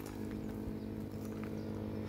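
A steady low mechanical hum made of several even tones that hold the same pitch throughout.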